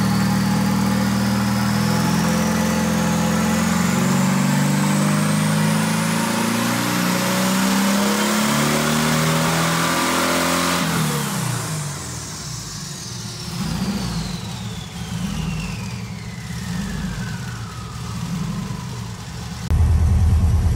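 Turbocharged VW Beetle engine making a full-throttle pull on a hub dyno, revving out cleanly. The revs climb steadily for about ten seconds with a high whine rising alongside. Then the throttle is lifted, the engine drops back and the whine falls slowly as everything winds down.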